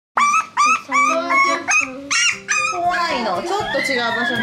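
Toy poodle puppies crying. The sound starts suddenly with a quick run of short, high-pitched whines and yelps, then from about halfway through several puppies cry over one another.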